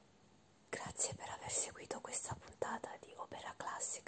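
A woman whispering in Italian, starting a little under a second in after a brief quiet stretch.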